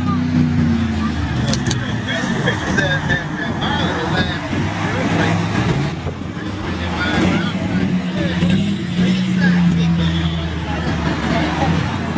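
Car engines running low and steady as traffic passes on the road, with people talking nearby.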